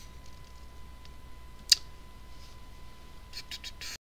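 A single sharp computer-mouse click, then a quick run of fainter clicks near the end, over a steady low electrical hum with a constant thin high tone.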